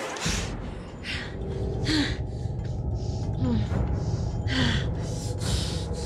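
A woman gasping and breathing hard in pain, with about five sharp breaths and a few short strained grunts, over a low droning music bed.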